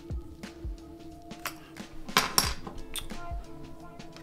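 Background music, with scattered clicks and light knocks of the parts of an Ultraview UV Slider bow sight being handled and worked loose; two sharper clicks come a little over two seconds in.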